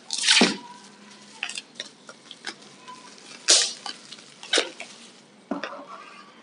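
Plastic bubble wrap crinkling and rustling as it is handled, in a series of short irregular crackles, the loudest at the start and again midway.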